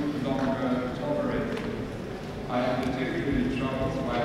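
A man speaking, giving a formal address, with a short pause about two seconds in.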